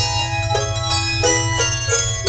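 A handbell choir ringing a lively tune: handbells struck in quick succession, each note ringing on and overlapping the next.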